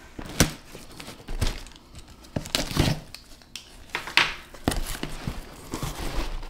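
Cardboard shipping box being opened by hand: tape tearing and the cardboard flaps and a foil insulated liner crinkling, in a run of short rustles and sharp snaps.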